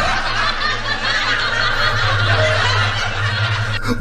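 Stifled snickering laughter close to the microphone, over a steady low hum.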